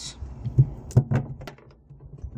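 A few sharp knocks and clicks as a long screw is pushed through the holes of two joined prop panels and the panels are handled.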